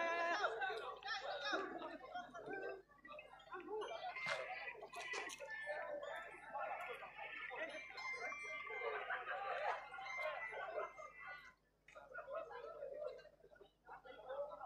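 Speech: voices talking almost all the way through, with brief pauses near the end.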